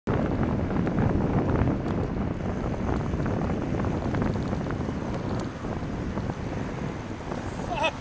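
Wind buffeting a bike-mounted camera's microphone while cycling at speed, mixed with road and traffic noise; the rush is strongest in the first couple of seconds and eases slowly as the bike slows.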